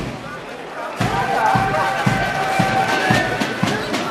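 Military marching band playing, long held notes over a bass-drum beat about twice a second, with crowd voices. The first second is quieter before the band comes in fully.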